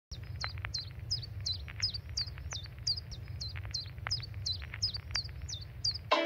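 A bird chirping over and over, about three short, downward-hooked chirps a second, over a steady low rumble.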